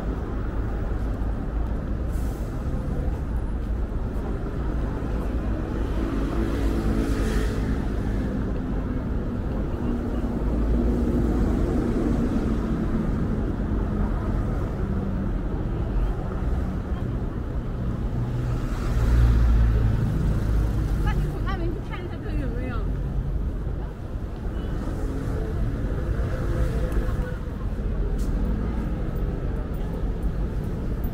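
Busy city street ambience: a steady rumble of road traffic with passers-by talking, and a louder low swell of a passing vehicle about two-thirds of the way in.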